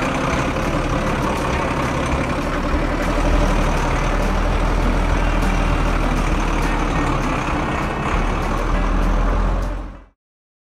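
Heavy truck engine running steadily with a deep rumble as the truck drives off. It fades out quickly at the very end.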